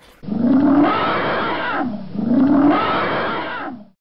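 Elephant calling twice: two long, low calls that each rise and then fall in pitch, the second beginning about two seconds in.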